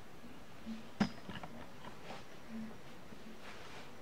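Handling noise as the camera is taken in hand and moved: a sharp click about a second in, then a few fainter clicks and soft rustles over low room tone.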